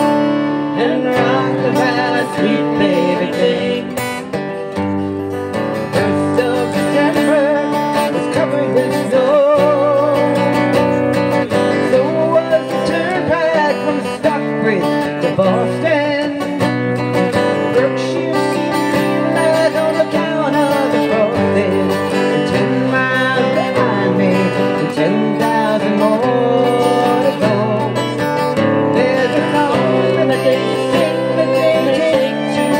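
A live country band playing: a fiddle carries the melody over a strummed acoustic guitar and bass guitar.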